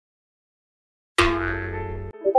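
Silence for about a second, then a sudden comic sound effect: a loud ringing hit with a deep low end that fades and cuts off shortly after.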